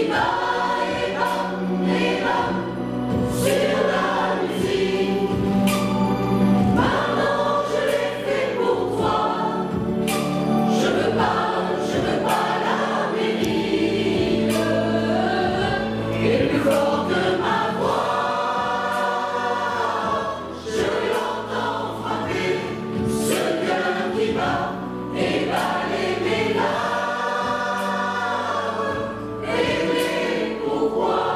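Mixed choir of women's and men's voices singing a French pop song in parts, over sustained low accompaniment.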